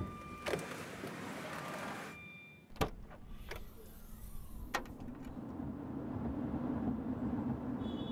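Inside a car cabin: a few sharp clicks and knocks, then a car door shutting about three seconds in, which cuts off the outside noise. From about halfway through, a low steady hum of the car under way builds and grows a little louder.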